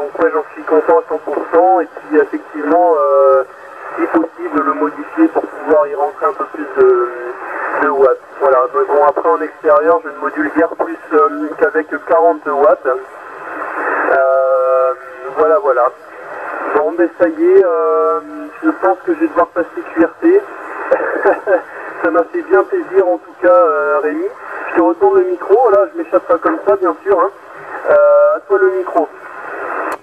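Another station's voice received over a 27 MHz CB transceiver in upper sideband (SSB): continuous talking, thin and tinny, with no bass and no top.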